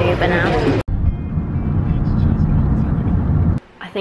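A woman's voice speaking, cut off abruptly about a second in, followed by the steady low rumble of a moving vehicle heard from inside it, with a faint thin whine above; it stops suddenly near the end.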